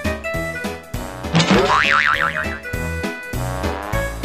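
Comic background music with a steady beat. About a second and a half in, a loud cartoon 'boing' sound effect cuts across it for about a second, rising in pitch and then wobbling.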